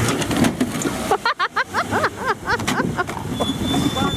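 Engines straining as a Lada Niva is dragged out of a river on a tow strap, with water sloshing around the wheels. Several people yell and whoop excitedly partway through.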